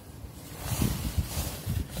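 Rustling and rubbing of a paper towel being handled and wiped around the power steering reservoir cap to clean up spilled fluid. The sound comes in irregular bursts, growing louder about half a second in, with some low buffeting noise.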